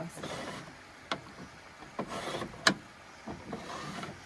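Metal hanging hooks sliding along a ceiling-mounted rail: short scraping slides with sharp clicks, the loudest click about two-thirds of the way through.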